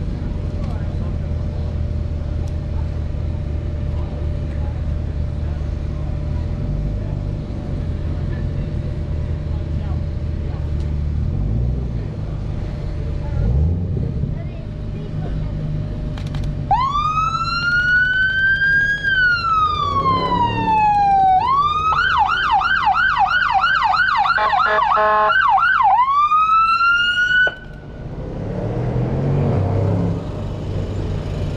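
Low engine rumble, then an American-style police car siren: one long wail that rises and falls, a fast warbling yelp of about three cycles a second, a brief cut, and a new rising wail near the end.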